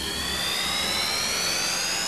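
Science-fiction space-travel sound effect: several whining tones rising slowly and steadily in pitch over a steady hiss, marking the quantum leap back to Earth.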